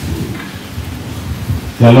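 Handheld microphone being passed from hand to hand: low rumbling and rustling handling noise through the sound system. Near the end a man says "Halo" into it.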